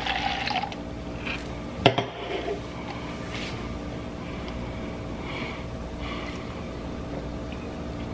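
Sangria poured from an aluminium can into a plastic cup, the pour tailing off under a second in. Then a single sharp knock about two seconds in, and quiet room sound.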